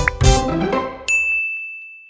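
A short intro jingle of music ends about a second in, and a single bright bell-like ding, a notification-bell sound effect, sounds and rings on, fading slowly.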